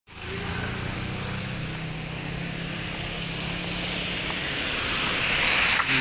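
Street traffic on wet pavement: a steady low engine hum that fades out about four and a half seconds in, under a hiss of tyres on the wet road that grows louder toward the end.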